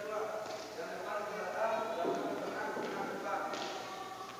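Indistinct voices and running footsteps of children doing badminton footwork drills on an indoor court, heard in a large sports hall.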